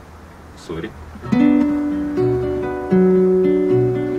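A nylon-string classical guitar starts a song's introduction about a second in, after a brief quiet moment with a short spoken sound. It plays picked notes over a changing bass line.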